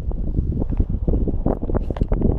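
Wind buffeting the microphone, with a serrated metal digging tool scraping and knocking in loose soil, a run of short scrapes in the second half.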